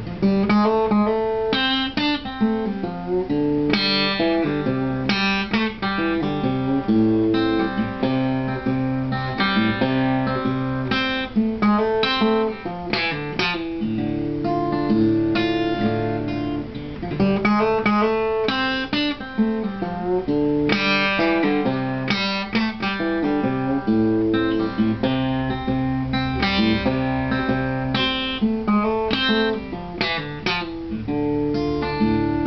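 Solo acoustic guitar played fingerstyle: a steady run of picked notes, with a bass line moving under a melody on the higher strings.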